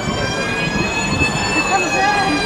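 A long, high wail held right through, its pitch slowly rising and falling like a distant siren, over the murmur of people around.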